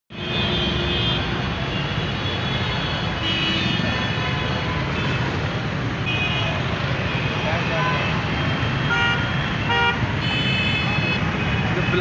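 Congested street traffic: car and motorcycle engines running in a steady rumble, with car horns honking several times.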